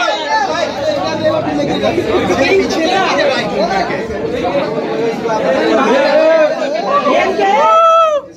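Many people talking at once, their voices overlapping into a steady chatter, in a large room.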